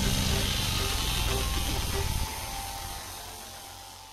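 Logo-animation sound effect: a deep sustained rumble under a hissing wash, holding for about two seconds and then fading away.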